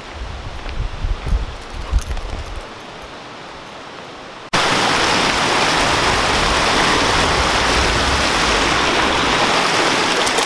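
Small mountain stream rushing and splashing over rocks, a loud, steady rush that starts abruptly about four and a half seconds in.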